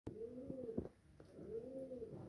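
A pigeon cooing: low coos that rise and fall, repeating about once a second, with a couple of light knocks in the room.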